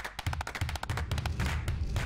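Logo-sting sound design: a fast run of sharp clicks over a low bass tone, with a noisy swell starting to build near the end.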